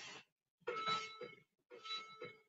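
A woman's faint, strained breaths during Russian twists, coming in short breathy exhales about once a second with a slight hum of voice in them.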